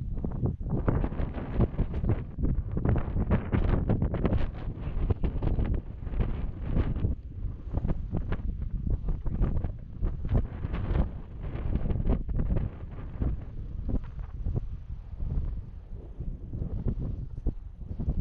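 Wind buffeting the camera's microphone: a gusty low rumble that rises and falls throughout.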